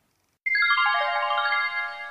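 A short electronic music sting: a quick run of notes falling in pitch, each note held so they ring on together, then fading out near the end.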